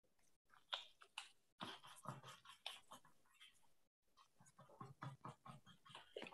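Near silence with faint, irregular scratchy strokes and small clicks: a paintbrush working oil paint on canvas.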